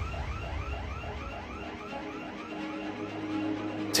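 A fast, even run of short electronic chirps, about four a second, over a faint steady tone, with a low hum coming up near the end: a tension-building pulse in the trailer's soundtrack.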